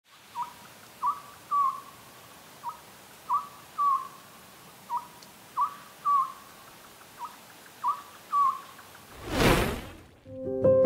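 Oriental scops owl calling: four phrases about two seconds apart, each a short hoot followed by two longer, slightly down-slurred hoots. Near the end a loud whoosh swells and fades.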